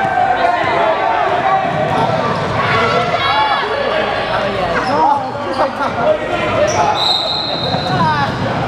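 Basketball dribbled on a hardwood gym floor during a game, under a constant mix of spectators' voices, with a brief high squeak about seven seconds in.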